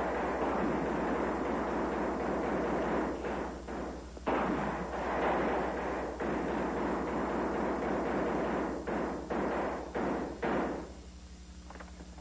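Loud, rough noise with no steady pitch, in two long stretches that start and stop suddenly. Several shorter bursts follow, and it fades about a second before the end.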